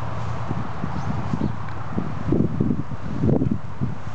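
Footsteps through long dry grass: a run of soft thuds and swishes, loudest in two bunches in the second half, over a steady low hum of distant traffic.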